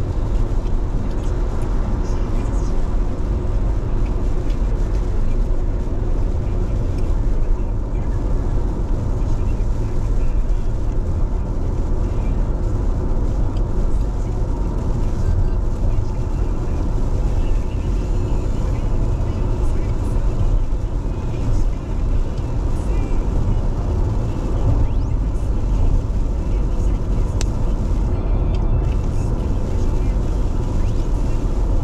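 Steady road and tyre noise of a car driving at speed on a wet expressway, heard from inside the cabin as a constant low rumble with a hiss of spray.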